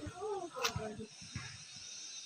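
Faint voices in the first second with a single click, then quiet outdoor ambience with a steady faint high hiss.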